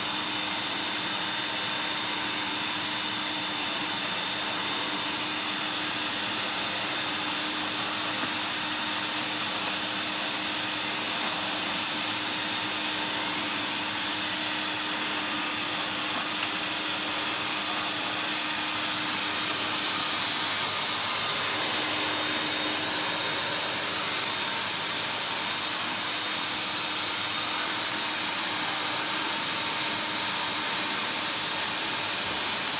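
Vax 2000 tub canister vacuum cleaner running steadily, its turbo brush head worked over carpet. A motor whine holds one pitch over the rush of air, swelling slightly about two-thirds of the way through.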